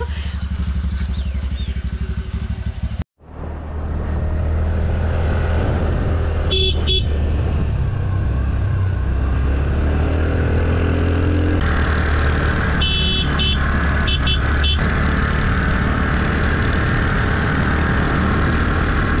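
Motor scooter running steadily under way, its engine drone mixed with road and wind noise. A horn gives a short beep about seven seconds in and a quick series of short beeps between thirteen and fifteen seconds.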